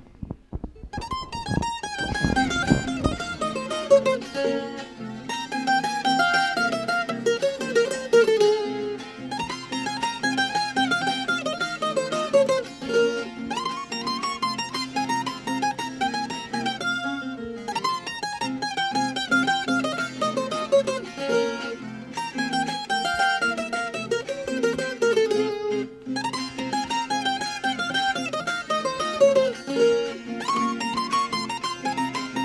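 Colombian requinto playing a lively rumba melody in quick runs of plucked notes, over a steady strummed tiple accompaniment.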